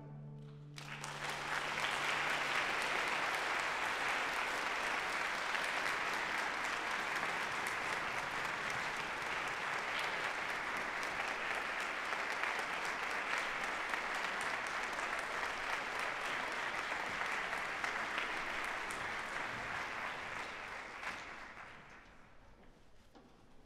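Audience applauding after an orchestral piece, starting about a second in as the final chord's low note dies away, holding steady, then fading out near the end.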